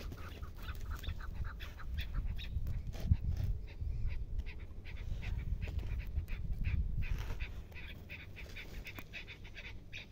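Chukar partridges calling, a rapid series of short repeated chuk notes, over the low rumble of wind on the microphone that eases near the end.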